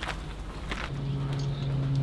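Footsteps on a concrete floor, then a steady low hum that starts about a second in.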